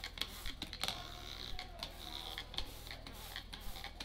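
Hand-held trigger spray bottle of plain water being pumped over a seed tray: an irregular run of short spritzes and trigger clicks, about two to three a second.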